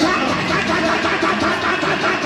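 Congregation clapping their hands, with many voices calling out and praying aloud over one another.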